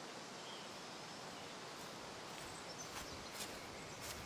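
Faint outdoor woodland ambience: a steady, even hiss with a few faint bird chirps and light scattered clicks of rustling.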